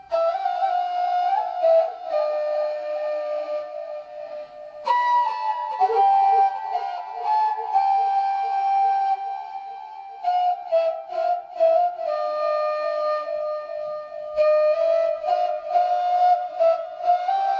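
Background music: a flute melody moving from note to note in a steady stream.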